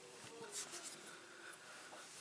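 A quiet pause in a small room: faint room tone with a soft rustle about half a second in.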